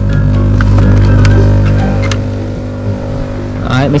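Small electromagnetic aquarium air pump running with a steady low buzzing hum, with a few light clicks as its air tubing is handled.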